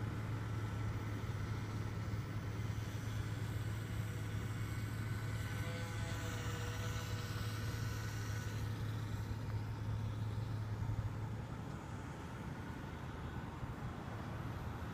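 A steady low hum, which drops away about 11 seconds in. Over it, the faint whine of the HobbyZone Champ RC plane's small electric motor swells and bends in pitch midway as the plane passes closer overhead.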